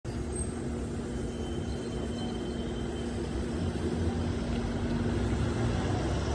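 Engines of a gendarmerie SUV and van running as they pull out into the street, a steady low rumble that grows a little louder toward the end.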